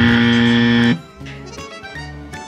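An edited-in 'fail' sound effect: a loud held buzzy note that lasts about a second and cuts off suddenly, marking a failed mission. After it comes quieter background music with a steady bass line.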